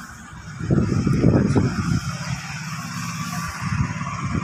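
A motor vehicle going by, loudest about a second in, then fading to a steady low hum.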